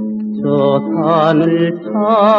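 Old Korean popular song from a 1962 LP: a singer holding long notes with wide vibrato over a steady accompaniment, with a short break in the voice around the middle.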